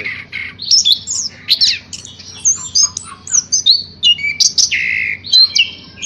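Caged chestnut-capped thrush (anis kembang) in full song: a fast, varied stream of short whistles, rising and falling slurred notes and buzzy trills, with only brief gaps.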